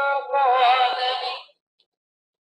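A person's voice holding a drawn-out sound on a nearly steady pitch, with a slight waver in the middle, cutting off abruptly about one and a half seconds in.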